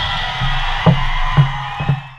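Live rock band's final chord and cymbals ringing out after the last big hit. Three low drum thumps land about half a second apart in the second half.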